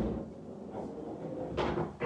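A few dull knocks, the clearest near the end.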